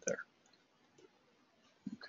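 A few faint computer mouse clicks with near silence between them, as points are placed while tracing in drawing software. A man's voice says one word at the start.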